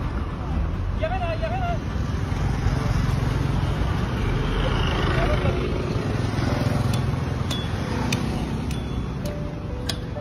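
Steady rumble of road traffic and outdoor noise with a voice heard briefly about a second in. In the second half, music with a light ticking beat comes in over it.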